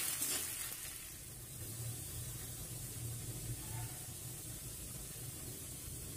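Sliced onions frying in hot mustard oil in a kadhai: a faint, steady sizzle with a low hum beneath it.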